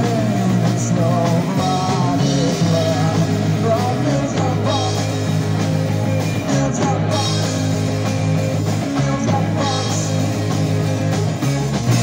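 Punk rock band playing live: electric guitar, bass guitar and drum kit, with a male voice singing over them in the first few seconds.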